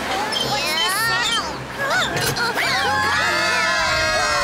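Several cartoon characters' voices shouting and crying out together, without words; from about three seconds in they hold one long group scream.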